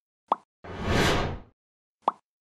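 Animation sound effects: a short pop about a third of a second in, then a whoosh that swells and fades over just under a second.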